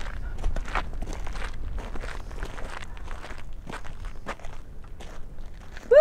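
Footsteps crunching on sandy dirt and gravel, a few steps a second, over a low wind rumble on the microphone. A short shouted "woo" at the very end is the loudest sound.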